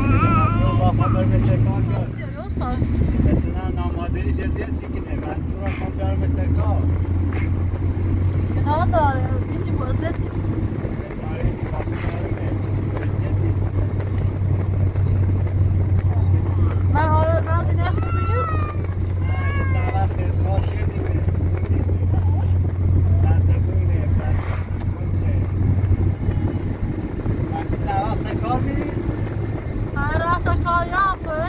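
Car engine and road noise heard from inside the cabin of a moving car, a steady low drone. Short voices break in briefly about nine seconds in and again around seventeen to twenty seconds.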